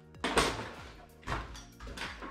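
A few knocks and rattles from the metal tube frame of a fishing barrow being handled and tipped over, the first the loudest, over soft background music.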